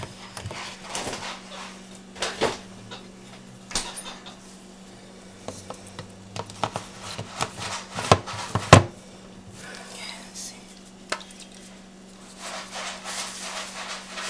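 A plastic Ninja blender cup and its blade lid being handled on a countertop: scattered clicks and knocks as the lid is fitted, the loudest a sharp knock a little past halfway. The blender motor is not running.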